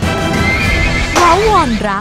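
A horse whinnies, a high wavering call about half a second in, over dramatic background music. A man's voice begins speaking over the music in the second half.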